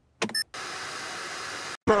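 A short electronic blip, then a steady hiss of television static for about a second that cuts off suddenly.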